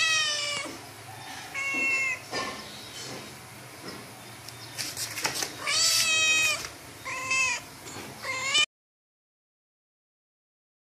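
Adult cat and kittens meowing: about six separate meows, the loudest about six seconds in. The sound cuts off suddenly shortly before the end.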